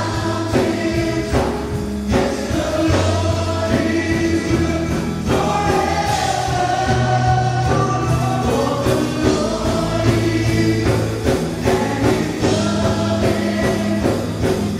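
Live contemporary worship band playing a slow gospel song: several voices singing together over acoustic guitars, bass, keyboard and drums, with a steady beat and sustained bass notes.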